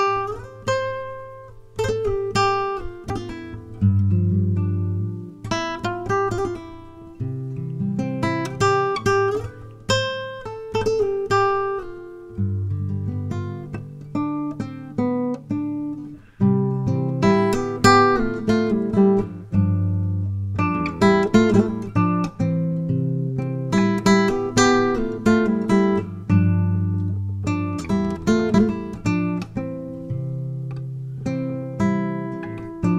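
Acoustic guitar music: chords strummed and left to ring out, a new chord every second or two.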